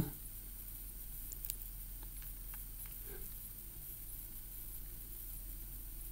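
Low steady hum with a few faint, scattered clicks from a Samsung Gear S3 Frontier smartwatch's rotating bezel being turned to scroll between screens.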